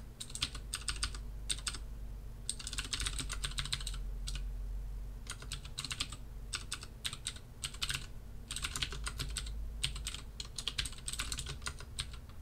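Computer keyboard typing in quick bursts of keystrokes broken by short pauses.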